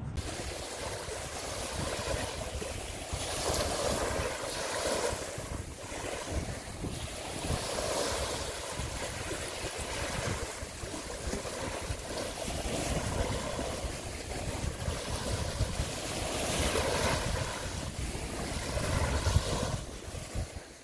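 Surf washing onto a beach, with wind on the microphone; the wash swells and eases every few seconds.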